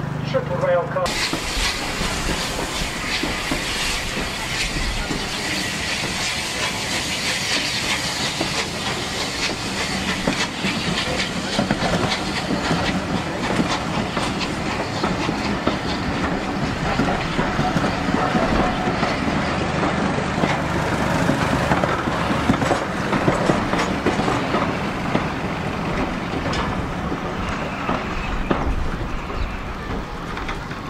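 A train of passenger coaches running past close by: a steady rumble of wheels on the rails with a rapid clatter of clicks over the rail joints. It starts suddenly about a second in and eases off near the end.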